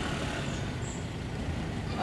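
Steady street and traffic noise, mostly a low rumble, with no distinct events.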